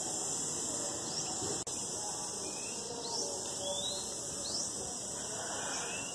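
Insects droning steadily, high-pitched, with a few short rising chirps over the drone.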